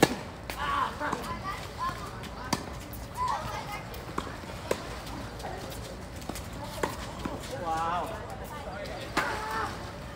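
Tennis ball hit by rackets and bouncing on a hard court during a doubles rally: a serve at the start, then sharp single pops every second or two. Players' voices are heard between the shots.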